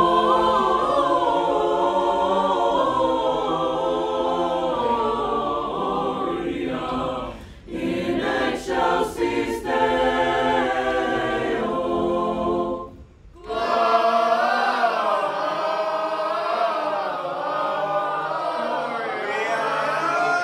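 Mixed high school choir singing a Christmas song in several-part harmony, with two brief breaks for breath, about eight and thirteen seconds in.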